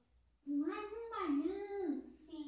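High-pitched, cat-like voice of a hand puppet character, starting about half a second in and wavering up and down in pitch for about a second and a half.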